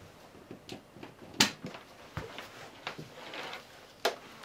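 Scattered light clicks and knocks of a plastic plug-in keyboard power adapter being picked up and handled, the sharpest click about a second and a half in.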